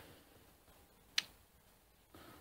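Two short clicks over faint room tone: a faint one at the very start and a sharper one just after a second in.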